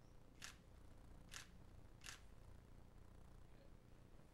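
Three faint, sharp camera shutter clicks, roughly a second apart, over quiet room hum: a group photo being taken.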